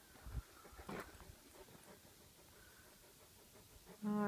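Near silence outdoors, with a faint low thump early on and a short click about a second in.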